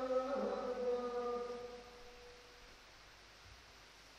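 Chanting voice holding long, slowly sliding notes that fade out just under two seconds in, leaving faint hiss.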